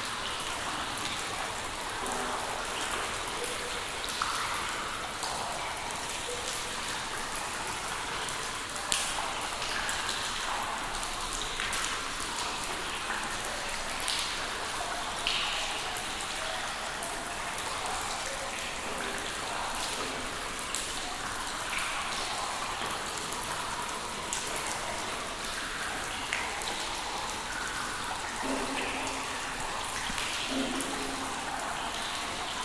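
Water dripping in a cave: a steady patter of many drops, with single louder drips plinking now and then, the loudest about nine seconds in.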